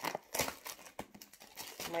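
Thin plastic shrink wrap crinkling and tearing as it is peeled off a paperback book, in quick irregular crackles.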